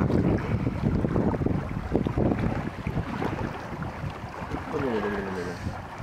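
Wind buffeting the microphone on a small dinghy crossing open water, loudest in the first second. A voice starts briefly near the end.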